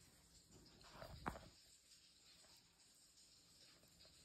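Near silence, with a faint rustle of chopped lettuce being spread on a tortilla and one small click about a second in.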